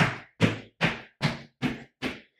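Feet in sneakers landing on the floor in a run of quick, springy pogo-style jumps travelling sideways, a thud about two and a half times a second, five in all.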